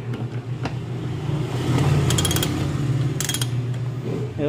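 Socket ratchet clicking in two quick runs, about two seconds in and again a second later, while turning out a 12 mm bolt, over a steady low hum.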